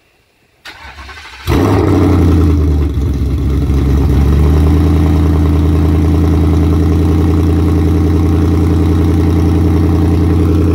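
2019 Ford Mustang GT's 5.0-litre DOHC V8, on open longtube headers with no catalytic converters, starting: the starter cranks for under a second, the engine catches with a loud flare, then settles into a steady, very loud idle.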